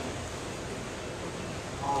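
Steady room noise of a crowded dining room, an even hiss with faint voices under it. Near the end a man says "um" as he starts to speak.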